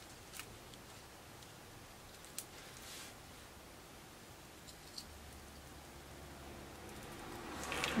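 Faint, scattered clicks and light taps of paper pieces and a photo being handled and laid on a scrapbook layout, over quiet room hum.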